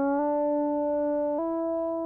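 A sustained synthesizer tone being bent upward through Antares Auto-Tune 5. The pitch does not glide but jumps up in steps, once about a quarter second in and again about a second and a half in, as Auto-Tune snaps the slide to the notes allowed in a C major scale.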